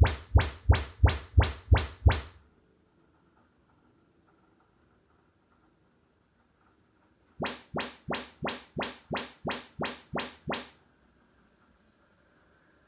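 Audyssey MultEQ XT32 calibration test sweeps played through the speakers by a Denon AV receiver, measuring each speaker for room correction. A rapid series of chirps, about three a second, comes from the left front tower speaker for the first two seconds or so. After a pause of about five seconds, a softer series of about ten more follows.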